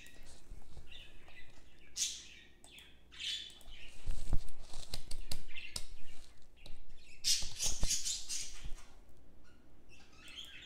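Computer keyboard keystrokes and mouse clicks in irregular clusters, as a word is deleted from a text box and a new one typed.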